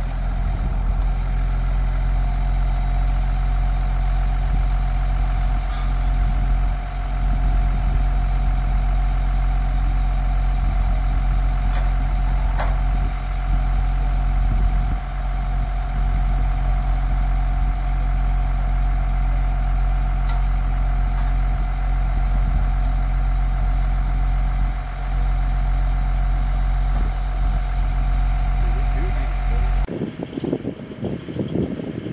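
Heavy military cargo truck's diesel engine running steadily at idle, with a steady whining tone over the low hum and a brief metallic click about twelve seconds in.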